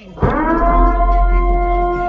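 Loud held synth note in a hip-hop track, swooping up into a steady pitch over a deep sub-bass boom, starting a moment in and sounding for about two seconds.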